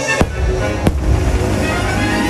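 A fireworks display bursting over the show's music: two sharp bangs less than a second apart near the start, followed by a low, continuing rumble of further bursts while the music plays on.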